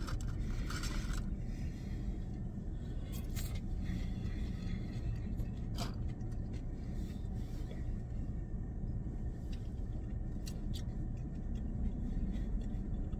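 Steady low hum of a parked car's cabin, with a brief rustle near the start and a few faint clicks while food is chewed.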